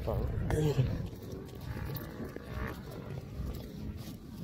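Low rumbling outdoor street noise picked up by a phone microphone, after one short spoken word at the start.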